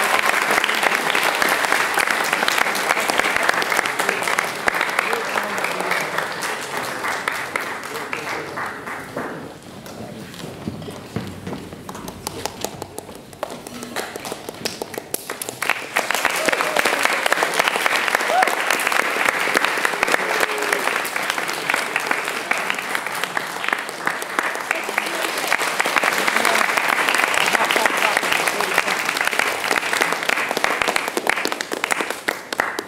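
Audience applauding, dying down to scattered clapping about a third of the way through, then swelling again about halfway and carrying on.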